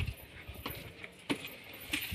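Footsteps on stone steps: a few faint light taps, about two every second and a half, as people climb a narrow stone stairway.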